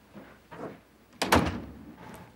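A wooden room door being opened, with a couple of light handling sounds, then shut with a loud bang a little over a second in.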